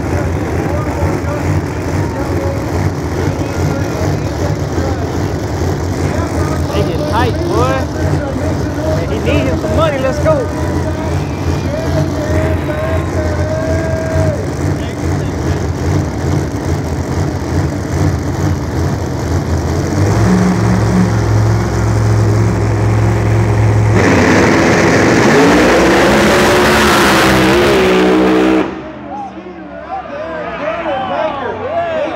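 Big-tire drag race car engines rumbling steadily at idle, growing louder about two-thirds of the way through, then launching: a loud run of engine revs climbing in pitch that cuts off suddenly shortly before the end.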